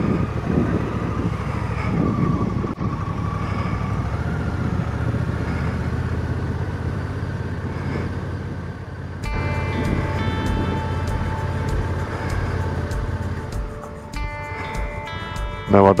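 Motorcycle engine running as the bike rides slowly, with wind noise on the microphone. About nine seconds in, background music with clear sustained notes starts abruptly and continues over the riding sound.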